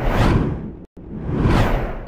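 Whoosh transition sound effect for a news-logo wipe: a swell that fades away, a sudden drop to silence just before the middle, then a second swell rising back up.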